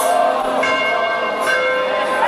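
Church bells ringing continuously, many sustained tones overlapping, as relics are carried in procession.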